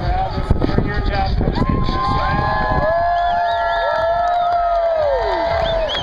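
Crowd of spectators cheering and whooping. From about two seconds in, many long held yells overlap over general chatter.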